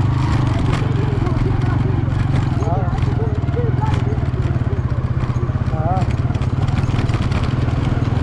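An engine running steadily: a low drone with fast, even pulsing throughout, with faint voices over it.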